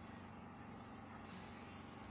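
Faint, steady low mechanical hum under a background hiss; the hiss brightens a little over a second in.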